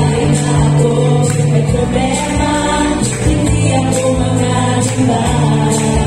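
A women's vocal group singing a Christian worship song together into microphones, amplified over instrumental accompaniment with a steady beat.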